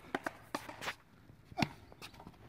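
A quick series of sharp knocks and taps, about five in two seconds, from rushball play: the ball being struck and bouncing, with players' footsteps on the court.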